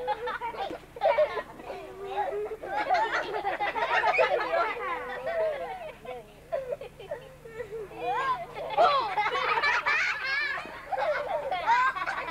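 A group of children's voices, many at once, calling out and chattering over one another, swelling around four seconds in and again from about nine seconds.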